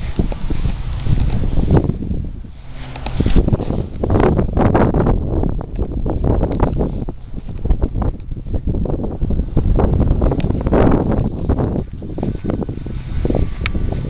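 Wind buffeting the camera microphone in uneven gusts, with the rustle of footsteps on grass.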